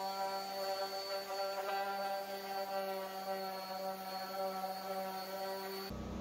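Random orbit sander running steadily on walnut, a constant pitched hum that cuts off abruptly just before the end.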